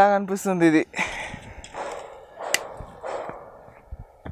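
A man's voice briefly at the start, then the rustle of crumbly vermicompost being scooped by hand and worked through a plastic sieve, with one sharp click about two and a half seconds in.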